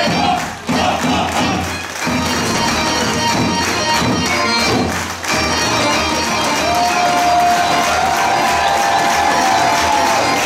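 A live folk orchestra of violins, accordion and double bass plays a fast dance tune, with a large two-headed tapan drum among the dancers, and dancers and crowd shout and cheer over it. The music dips briefly twice, and a long held high note runs through the last few seconds.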